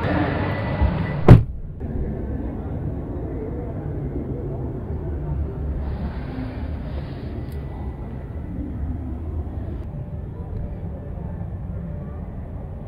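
Toyota Hilux Double Cab rear door pulled shut from inside, a single loud thud about a second in. After it shuts, the background voices become muffled to a dull low rumble inside the closed cab.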